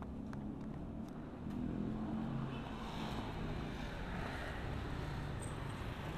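Passing street traffic: a low, steady hum of motorbike and car engines, swelling slightly a couple of seconds in.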